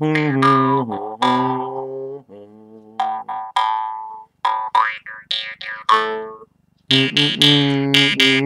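A jaw harp (mouth harp) plucked in a rhythmic run of twangs over a steady low drone, its overtones sliding up and down as the mouth changes shape. There are a few short breaks between phrases.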